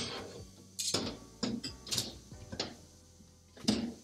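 Glassware being handled and put away: about six separate knocks and clinks spread over a few seconds.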